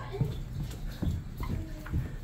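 Footsteps, a few dull thuds under a second apart, with faint voices in the background.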